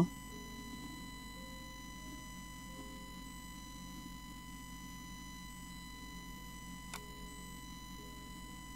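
Faint background music with a steady high electrical whine, and a single sharp click about seven seconds in.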